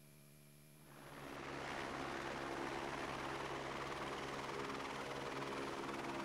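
Steady drone of a helicopter's engine and rotor, heard from inside the cabin, fading in after about a second of silence.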